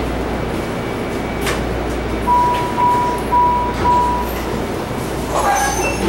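MARTA rail car standing at a station with a steady hum. Partway in come four short, evenly spaced beeps, about two a second, the warning that the doors are about to close. Near the end a chime sounds ahead of the automated announcement.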